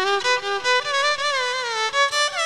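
Electric violin bowed in its clean tone with no effect, playing a melodic phrase whose notes slide and bend into one another.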